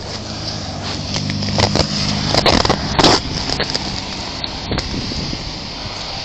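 Close handling noise: the body-worn camera rubbing, scraping and knocking against clothing, with a cluster of knocks loudest about three seconds in, over a low steady hum.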